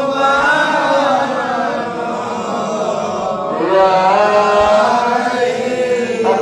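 Islamic devotional chanting (zikr): a man's voice in slow melodic lines with long held, bending notes, easing off briefly near the middle before rising again.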